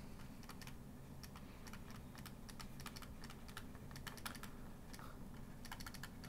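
Faint, irregular clicking and tapping of a stylus tip on a tablet screen as words are handwritten, over a low steady hum.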